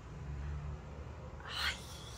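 A woman's soft, low closed-mouth hum, followed near the end by a short breathy sound, over quiet room hum.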